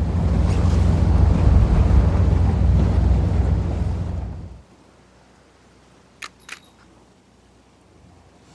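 Wind buffeting the microphone over the low rumble of a boat under way, which cuts off about four and a half seconds in. Then a quiet sea background with two short, sharp clicks a moment apart.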